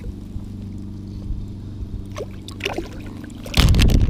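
Steady low mechanical hum, like a motor running at a distance, with a few faint clicks. About three and a half seconds in, a loud rushing noise cuts in and stays to the end.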